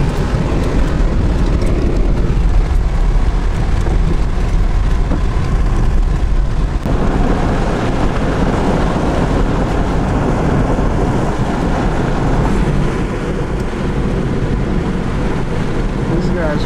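Steady road and engine noise of a moving vehicle heard from inside the cab, a deep rumble with a dip and change in tone about seven seconds in.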